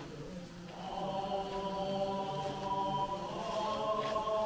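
Buddhist sutra chanting in long held tones. It swells about a second in and shifts a little higher in pitch near the end.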